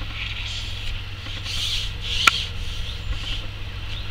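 Outdoor ambience at the lakeside: a steady low rumble with soft rustling, and one sharp click a little over two seconds in.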